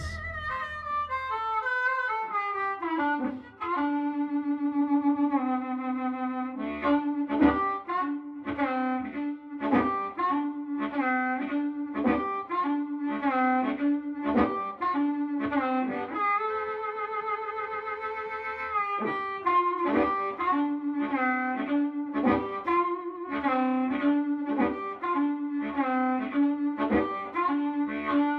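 Diatonic blues harmonica played through a Shaker Mad Dog harp microphone: phrases of short, bent notes over a repeated low note, with a long wavering chord held about two-thirds of the way through.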